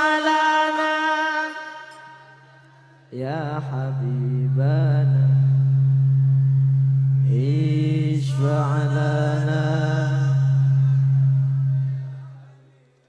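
A held sung note fades out, and after a short lull a solo male voice sings long, ornamented sholawat phrases in two lines over a steady low drone.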